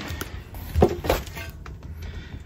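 A 20-inch alloy wheel being lifted and set down on a digital platform scale: a few short knocks and clatters of handling, the loudest about a second in.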